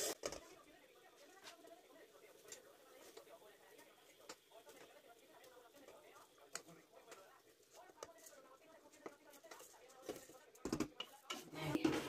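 Mostly quiet, with faint scattered clicks and taps of a wooden spoon against a metal pot as steamed vermicelli is worked into it, and a few louder knocks near the end.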